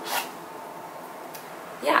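Brief scrape and rustle of a small cardboard product box being handled and its bottle slid out, right at the start, then quiet room tone.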